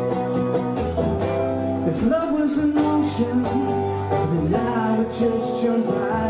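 Acoustic guitar strummed in a live song, its chords ringing and changing every second or so.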